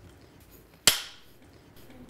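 A film clapperboard snapped shut once, about a second in: a single sharp clap with a brief ring-out.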